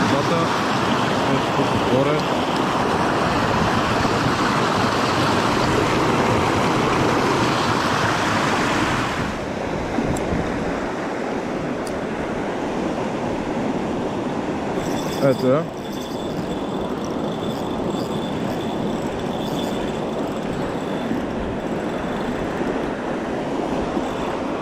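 Mountain river white water rushing over rocks, loud and steady. About nine seconds in it changes suddenly to a quieter, softer flow of shallow water.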